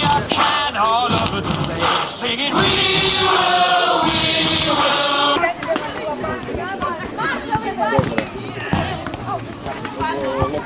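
Children's voices in a group, with about three seconds of several voices singing together in the middle.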